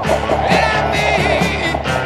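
Rock music.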